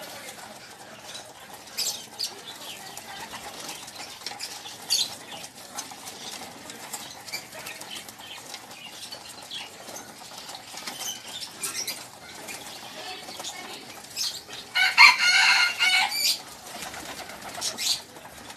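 A flock of racing pigeons jostling and feeding on a wire-mesh cage floor: wings flapping, with scattered sharp clicks and taps. About 15 s in, a louder pitched sound lasts a little over a second.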